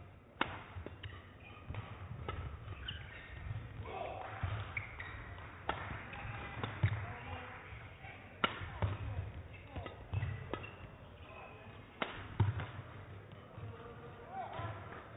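Badminton rally in a hall: sharp cracks of rackets hitting the shuttlecock, irregularly spaced, with players' footfalls and short shoe squeaks on the court floor between the shots.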